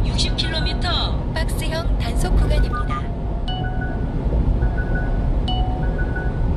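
Steady road and engine rumble inside a moving 1-ton truck's cab, with music playing over it.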